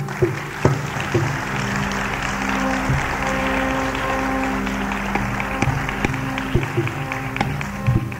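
Audience applause breaks out suddenly and dies away near the end, over a Carnatic ensemble that keeps playing: a bamboo flute's held notes and drum strokes.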